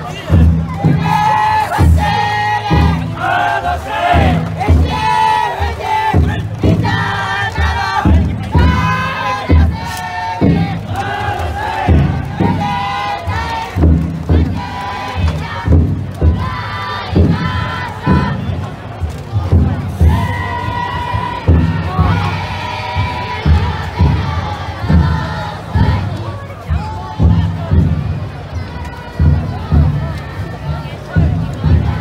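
Crowd of futon daiko bearers chanting and shouting in unison, voices held in long sung calls, over a steady, even beat of the float's big drum.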